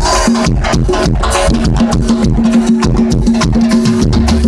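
Live band playing loud Latin dance music through a PA, with a steady rhythm of shaken and struck percussion over a repeating bass line.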